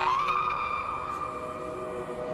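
A zombie woman's long, high wail, rising slightly at first and then held at one pitch, over a film score's sustained low notes.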